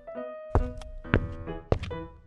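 Light background music for a cartoon, with three sharp knocks a little over half a second apart, in a walking rhythm.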